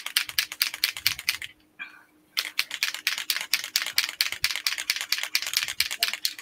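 Black Posca acrylic paint marker being primed to get the paint flowing: a fast, even run of clicks, several a second, with a short break about two seconds in.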